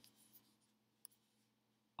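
Near silence: faint room tone with a single soft click about a second in.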